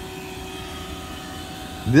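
Steady mechanical hum with a constant tone running underneath, from machinery running at an outdoor air-conditioning unit.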